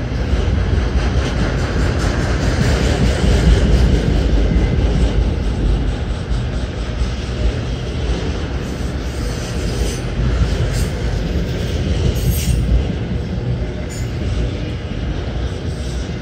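Autorack freight cars of a CSX train rolling past close by: a steady, loud rumble of steel wheels on the rails. A few sharper clicks come through about two-thirds of the way in.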